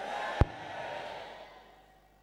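A soft breathy rush that swells and fades away over about a second and a half, with one sharp thump on a handheld microphone about half a second in.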